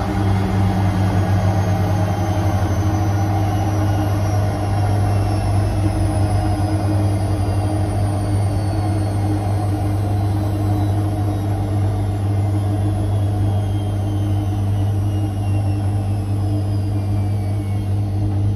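Bendix front-loading washing machine in its final spin, with an unbalanced load, its drum and motor running steadily with a faint high whine that slowly falls in pitch, over a steady low hum.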